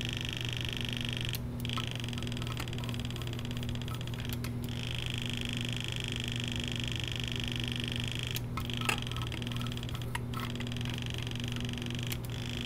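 Motor of an electric pipette controller whining steadily while cell suspension is pipetted up and down, stopping briefly about four times, over a low steady hum.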